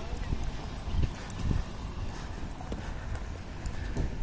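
Footsteps on paving with low rumbling thumps from wind buffeting a handheld phone microphone.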